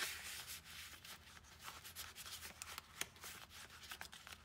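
Paper and cardstock of a handmade junk journal rubbing and rustling under the hands as a picture card is slid against the pages toward its pocket, with light scrapes and small taps throughout.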